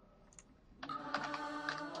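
Computer keyboard keys tapped a few times, starting about a second in, as a character is typed into a Chinese input method. A steady droning background sound with a fixed pitch sets in at the same moment.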